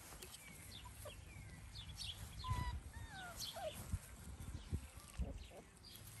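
Faint bird chirps and short whistled calls, scattered throughout, with a few soft low knocks.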